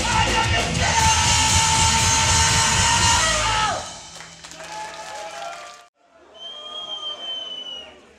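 Hardcore punk band playing loud and live, the song ending on a held chord that cuts off abruptly a little before halfway. After it come quieter crowd yells and cheers, with a steady high tone near the end.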